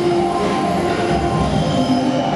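Ambient electronic soundscape accompanying a light-projection installation: a steady low rumble with several held tones above it.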